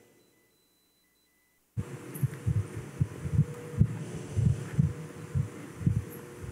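Silence for the first couple of seconds, then a steady low hum cuts in suddenly, with irregular dull low thumps, two or three a second, over it.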